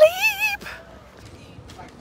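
A woman's voice jumping into a high, wavering squeal that lasts about half a second, then a faint background with a few light clicks.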